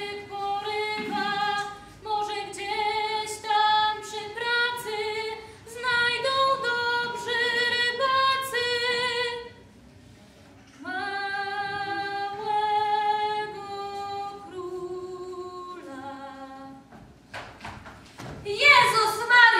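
A woman singing unaccompanied, a slow melody in long held notes. She breaks off for about a second and a half midway, then goes on more quietly.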